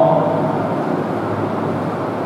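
Steady background noise with a low hum, unchanging throughout. In the first half second a man's drawn-out syllable fades out.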